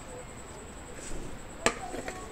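A single sharp knock of tableware about one and a half seconds in, with a brief ring after it, among soft handling noises of eating by hand from a plate.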